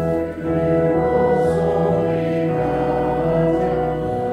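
Congregation singing a hymn with organ accompaniment, taking up a new line right at the start after a brief pause.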